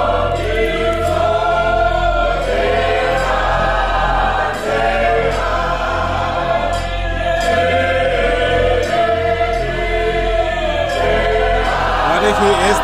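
A church congregation singing a hymn together in long, held phrases, in the style of Southern African churches.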